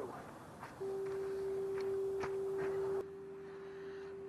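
A single steady pure tone at one unchanging pitch starts about a second in. It drops to a lower level about three seconds in and carries on steadily, with a few faint clicks beneath it.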